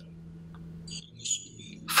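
Quiet room tone through a lecture podium microphone: a steady low hum, with a short soft hiss about a second in.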